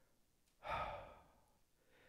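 A man's audible sigh: one breathy exhale of under a second, starting about half a second in and fading away.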